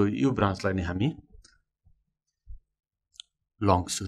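A man's voice speaking for about a second, then a pause of roughly two and a half seconds with a faint soft knock and a brief click, then his voice again near the end.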